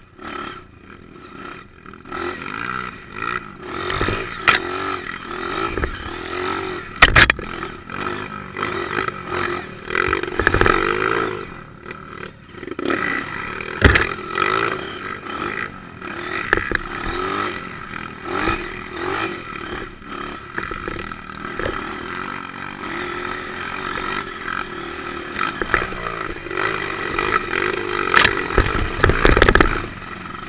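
Dirt bike engine revving up and down while riding a rough dirt trail, with sharp knocks and rattles from the bike at several points.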